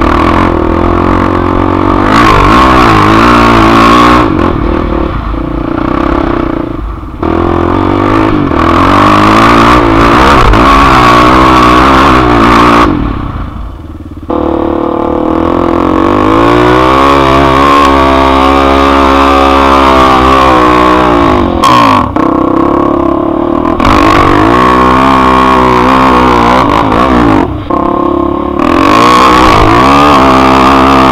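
ATV engine revving under load as the quad climbs a steep dirt hill, pitch rising and falling with the throttle, with brief let-offs a few times.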